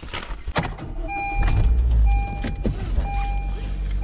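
A Honda Fit's four-cylinder engine starting about a second in and then idling, with a dashboard warning chime beeping about once a second over it. A few clicks and knocks come from moving about in the seat before it starts.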